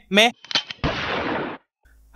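A few quick clicks, then a short, dense burst of noise like a gunshot or blast sound effect, lasting under a second and cutting off abruptly.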